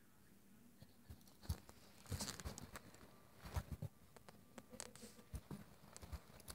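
Faint pawing and scrabbling of a Boston terrier under a bed: scattered claw taps and short scuffs that start about a second and a half in.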